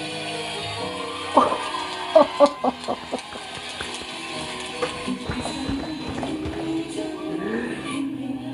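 A male-and-female pop ballad duet plays. About a second and a half in, it is cut across by a quick run of six or seven loud, short bursts of laughing and clapping close to the microphone, lasting under two seconds. The sung tones come back in the second half.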